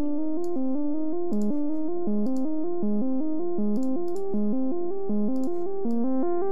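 Software synthesizer voice (VCV Rack VCO-1 through a VCF), played by a homemade four-step diatonic sequencer quantized to a minor scale and sent through shimmer reverb. It runs a quick, repeating pattern of stepped notes, with a faint click recurring under each cycle.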